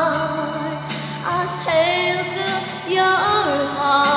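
A woman singing long held notes with vibrato over a karaoke backing track, sliding to a new pitch about a second and a half in and again near three seconds.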